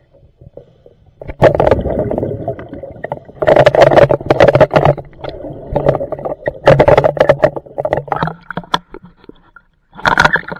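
A diver breathing through a regulator underwater: rushes of exhaled bubbles with a low rumble, recurring every two to three seconds.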